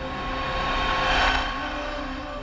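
Cinematic logo-reveal sound effect: a rushing whoosh that swells to a peak just past a second in and then eases off, over sustained music notes.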